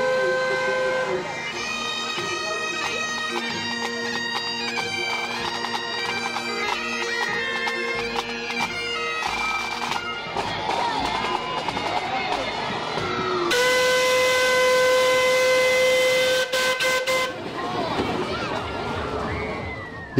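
Bagpipes playing a tune over their steady drones, then a steam traction engine's whistle blowing one long steady note for about four seconds, the loudest sound here. Crowd voices can be heard between them.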